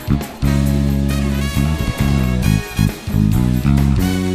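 Four-string electric bass played fingerstyle along with a recorded band track of a worship song. The bass holds a long low note from about half a second in, then moves through shorter notes.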